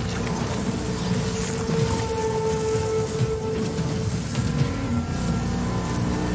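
Film score with long held notes over the low, steady rumble of a pickup truck driving along a dirt track.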